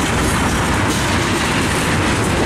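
Freight train tank cars rolling past close by: a loud, steady rumble of steel wheels on rails.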